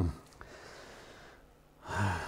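A man's short "hmm" trailing off at the very start. Then a faint steady hiss, and an audible intake of breath near the end.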